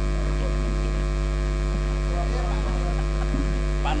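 Steady electrical mains hum, a low buzz with a ladder of overtones, carried by the sound system or recording chain.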